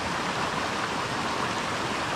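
A small rocky mountain brook spilling over a cascade into a pool: a steady rush of running water.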